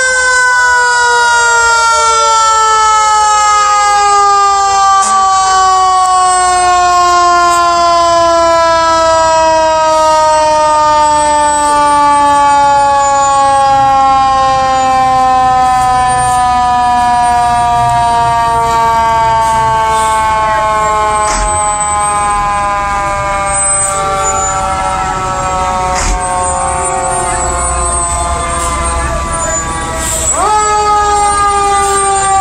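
A fire engine's mechanical siren coasting down in one long, slowly falling wail. Truck engines rumble low beneath it.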